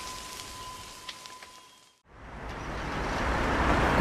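Outdoor ambient noise: a steady hiss fades out to a moment of silence about halfway through. Street traffic ambience then fades in and grows steadily louder.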